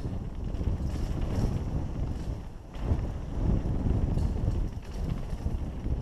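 Wind rushing over the camera microphone and knobby tyres rolling on a dirt trail as a mountain bike descends at speed, a steady rumble that dips briefly a little under halfway through.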